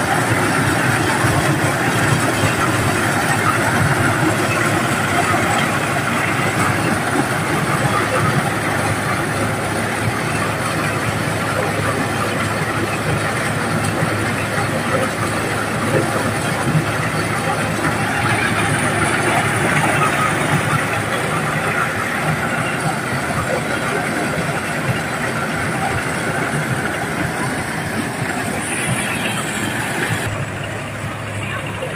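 Diesel-engine-driven corn sheller running steadily under load as corn is fed through it, giving a continuous dense mechanical noise while shelled cobs pour out of the chute.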